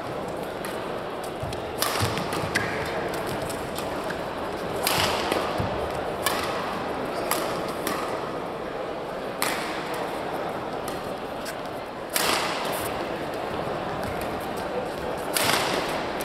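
Badminton rackets striking a shuttlecock in a doubles rally: sharp cracks every second or few, with the loudest hits about two, five, nine, twelve and fifteen seconds in, over a steady murmur of voices in a large hall.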